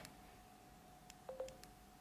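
Android phone's Google speech-input chime: a short, low two-note beep about a second and a quarter in, signalling that voice input has stopped listening after the spoken request.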